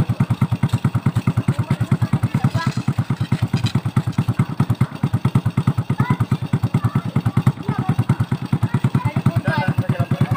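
Motorcycle engine idling steadily with an even throb of about ten pulses a second.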